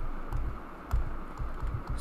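Scattered faint clicks from computer input, with several dull low knocks from handling on the desk over a steady low hum.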